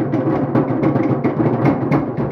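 Fast, steady drumming from a Polynesian show ensemble, about four strong beats a second with lighter strokes between.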